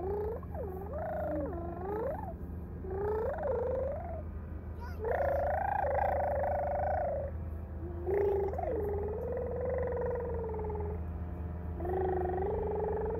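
A toddler vocalizing in a series of long, wavering high-pitched calls that slide up and down, with pauses between them, over a steady low hum.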